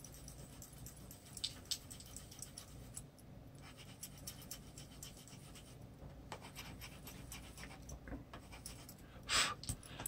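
Prismacolor colored pencil drawn lightly over paper: faint, scattered scratchy strokes, with a short loud breath near the end.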